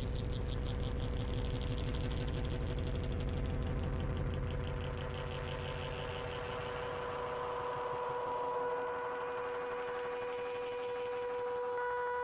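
Droning electronic background tones: a steady held tone under a fast pulsing low throb that fades out about halfway through, with higher held tones swelling in near the end.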